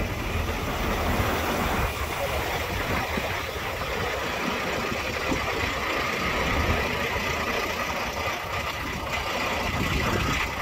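Semi-truck diesel engine idling steadily, with gusts of wind buffeting the microphone.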